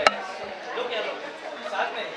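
Several people talking over one another, with no words standing out. One sharp click comes just after the start.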